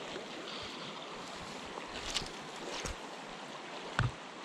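Steady rush of flowing river water, with a couple of faint clicks about two and three seconds in.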